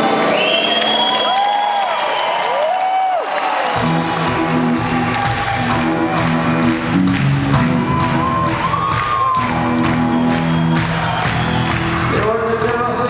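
Live rock band playing, with the audience cheering over the music. The low end and drums kick in about four seconds in, and the band then plays on steadily.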